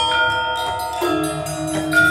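Balinese gamelan accompanying a Jauk dance: bronze metallophones ringing on, with a new set of strokes about a second in and a low, pulsing tone underneath after it.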